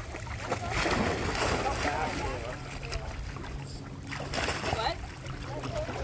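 Water splashing as a dog wades through shallow lake water, over a steady low rumble, with indistinct voices in the background.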